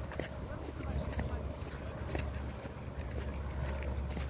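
Wind buffeting a phone microphone with a steady low rumble, with the light scuffs of footsteps on a paved path.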